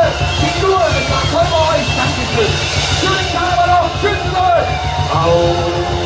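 A live band playing loud music with a steady beat, with a man's voice singing and calling out over it through a microphone.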